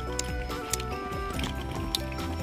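Background music of held notes that change slowly from one to the next, with a few brief faint clicks over it.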